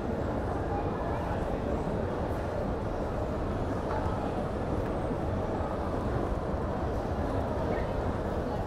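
Shopping-mall ambience: a steady murmur of many distant voices over a low background rumble, in a large atrium hall.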